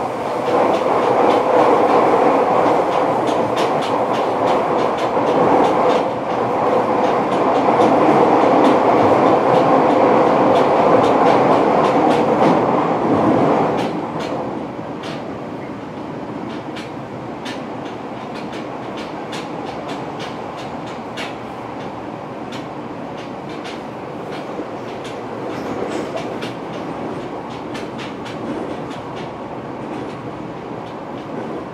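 Fukuoka City Subway 1000N series train heard from inside the car while running, wheels clicking over rail joints. The loud running noise drops off sharply about halfway through, leaving quieter rolling noise with the clicks still going.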